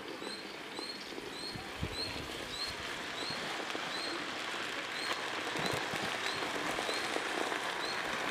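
Drumstick (moringa) leaves sizzling and crackling in a hot aluminium pot over a wood fire, a steady hiss that slowly grows louder. A bird chirps once about every half second throughout.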